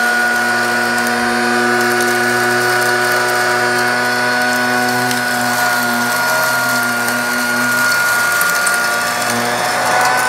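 A 1990s Dirt Devil Handy Zip corded handheld vacuum running steadily with a high motor whine, its belt-driven brush bar on carpet, picking up crushed eggshell fragments that rattle as they are sucked in.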